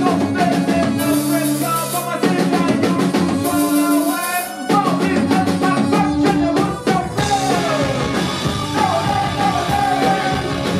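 Post-punk rock band playing live: drums, bass guitar, electric guitar and keyboards, with a lead vocalist singing. Cymbals crash repeatedly through the first half, and the arrangement changes about halfway through.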